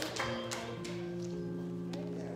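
Church keyboard playing soft, held chords with steady sustained notes.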